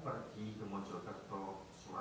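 A man's voice speaking into a microphone, reading aloud in short phrases: speech only.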